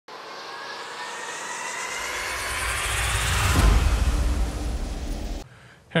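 Intro sound effect: a rising whoosh with upward-gliding pitch, joined by a deep rumble, swelling to its loudest about three and a half seconds in and then cutting off suddenly.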